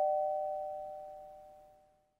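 The ringing tail of a falling two-note 'ding-dong' chime, fading away over about a second and a half.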